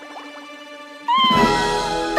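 Cartoon kitten giving one drawn-out meow about a second in, over soft background music that swells at the same moment.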